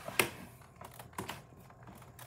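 Handling noise from a handheld phone camera being moved around: one sharp click just after the start, then a few softer, scattered taps and knocks.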